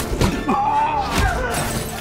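Trailer music with sharp smashing hits in the first moment, followed by a wavering, gliding high tone.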